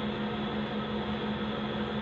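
Steady room noise: an even hiss with a low hum held on one pitch, unchanging throughout.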